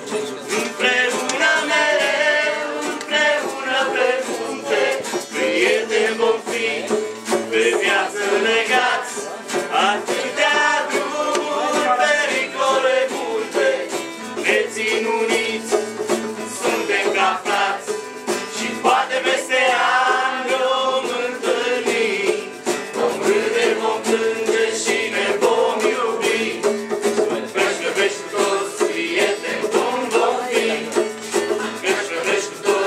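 Live acoustic band music: plucked and strummed strings under a continuous melodic lead line.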